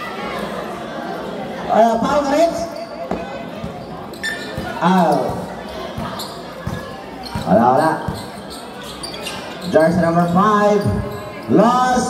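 A basketball bouncing on the court during live play, a scattering of short knocks, with several drawn-out, sliding shouted calls from a voice every few seconds over it.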